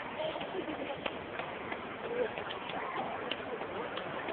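Short bird calls, like cooing, mixed into a murmur of voices.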